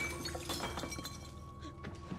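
Glass fragments and water falling and settling just after something bursts, heard as scattered tinkles and clinks that thin out and fade.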